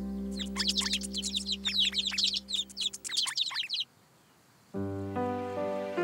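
A flurry of quick, high, falling chirps from cartoon birds for about three and a half seconds, over the held last chord of a song as it fades out. After a brief hush, light new music with plucked notes starts near the end.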